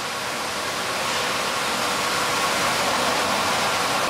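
A steady, loud rushing hiss.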